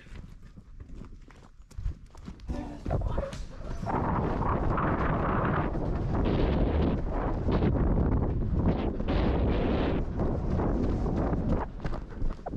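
Footsteps on a gravel road, light at first, then a loud, dense run of them from about four seconds in until shortly before the end.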